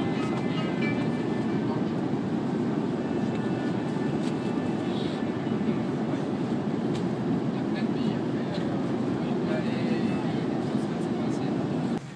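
Steady airliner cabin noise: a low, even rumble with no clear pitch.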